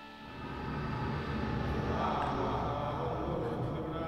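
Dramatic film score from the short film's soundtrack, building into a dense, louder passage a moment in.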